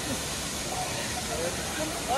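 Steady rushing hiss of a waterfall, with faint voices in the background.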